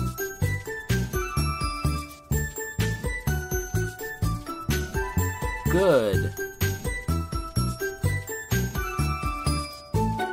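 Upbeat background music for children with a steady beat and bright, jingling bell-like notes.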